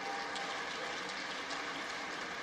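Steady applause from a large audience in a legislative chamber, many hands clapping at once.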